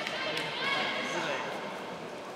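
Ringside shouting during a kickboxing exchange: a raised voice calls out over the first second and a half, with a single sharp knock about a third of a second in.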